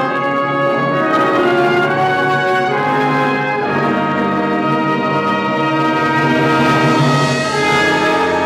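Wind band playing a slow passage of held chords, the harmony shifting to a new chord about halfway through.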